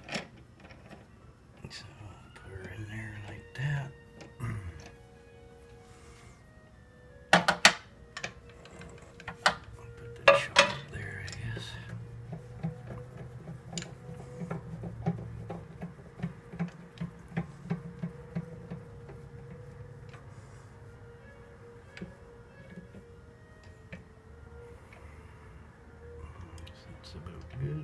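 Small metal lathe being set up by hand: scattered clicks and two loud sharp knocks, about seven and ten seconds in, from handling the chuck, tool post and carriage. Under them runs a faint steady hum.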